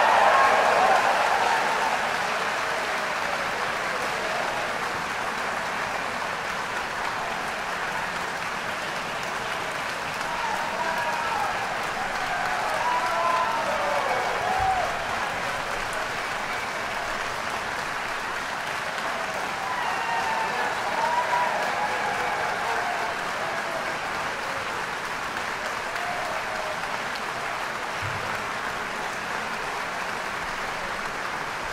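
Audience applauding steadily in a concert hall, with a few voices calling out and cheering about ten and twenty seconds in.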